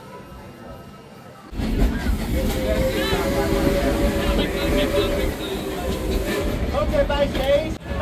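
Steam-hauled passenger train in motion, heard from an open car: a loud rumble sets in suddenly about a second and a half in, with a steady held tone and voices or music over it through the rest.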